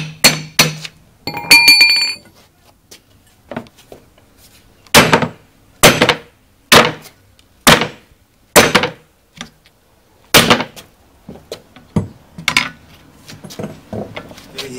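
Heavy blows on a steel bead-breaker wedge, driving it into a tyre's sidewall to break the bead off a steel wheel rim. A couple of quick strikes open, followed by one ringing metallic clang, then about six single blows roughly a second apart, and lighter knocks near the end.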